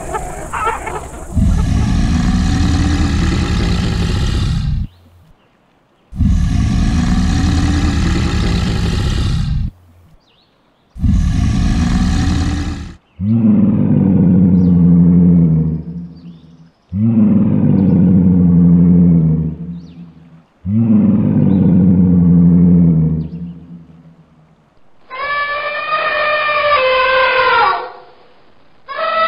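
Six long big-cat roars follow one another with short pauses, each lasting three to four seconds. The last three come from a tiger and are deeper and more growling. Near the end an elephant trumpets, its pitch falling.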